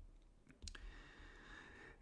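Near silence with two faint clicks about half a second in, typical of a stylus tapping a tablet's glass screen.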